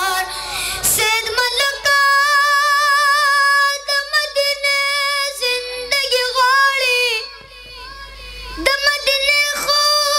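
A boy singing a Pashto naat solo into a microphone, with long held notes that waver in pitch. His voice drops to a quieter stretch about three-quarters of the way through, then comes back strong.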